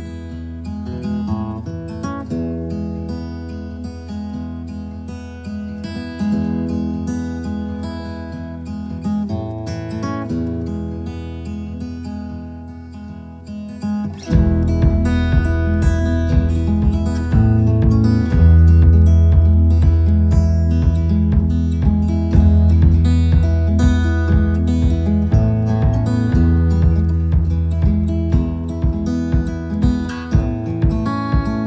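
Instrumental music led by plucked and strummed guitar. About fourteen seconds in it grows louder, with heavy bass and a steady beat coming in.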